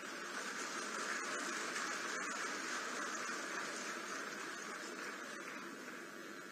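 Faint applause from a large audience, building in the first second and slowly dying away.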